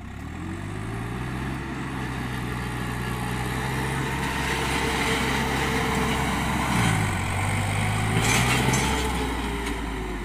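Diesel farm tractor engine revving hard while the tractor is driven in stunt turns. The engine note climbs in the first second, dips briefly about seven seconds in, then climbs again, over a steady hiss.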